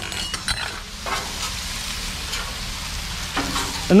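Garlic, ginger and dried chili peppers frying in oil on a Blackstone flat-top griddle: a steady, even sizzle. A few sharp metal clicks come in the first half-second.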